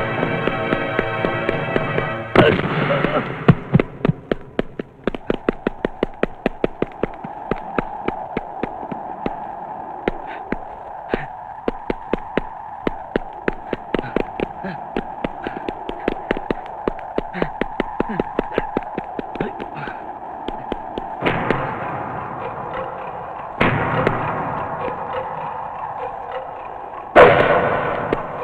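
Action-film soundtrack: a held musical chord breaks off about two seconds in into a long, fast run of sharp cracks over a steady held tone, with louder sudden hits near the end.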